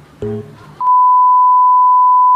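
A steady beep at one unchanging pitch, the test tone that accompanies TV colour bars, starts abruptly just under a second in and holds at a constant loud level.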